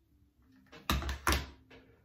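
Two loud bursts of handling noise, close together about a second in, as the recording phone is moved.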